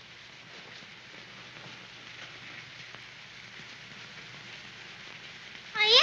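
A steady soft hiss, rain-like, with no clear events in it. Near the end a girl's voice breaks in with a short exclamation that rises sharply in pitch.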